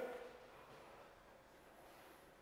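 Near silence: room tone, with the echo of a called command dying away in the first moment.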